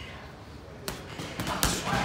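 Boxing gloves striking a hanging heavy bag: a few quick thuds in the second half, the heaviest of them a deep thump.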